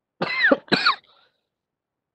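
A woman giving two short throat-clearing coughs, one quickly after the other.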